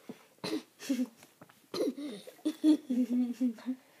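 Girls laughing and coughing while gulping water, with several short coughs and bursts of giggling.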